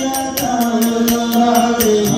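Nanthuni pattu, a Kerala ritual song to the goddess: a voice chanting in long held, slowly wavering notes over a steady beat of sharp percussive strikes, about five a second.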